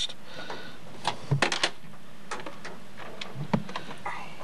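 Clicks and clatter from a multi-line desk telephone as its line button is pressed and the handset is handled: a quick cluster of sharp clicks about a second in, then a few lighter ones near the end.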